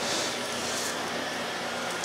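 Bosch Premium Electric Duo XXL (BSG81380UC) canister vacuum running steadily, its 1,400-watt motor drawing air while the electric powerhead is pushed over carpet.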